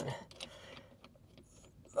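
A few faint clicks and some handling rustle as a phone camera is moved about inside a quiet car.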